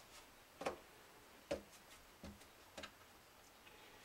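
Four light, sharp clicks spread over about two seconds, with a few fainter ticks between: hands working a one-handed bar clamp and the clamped guitar neck during a neck-reset glue-up.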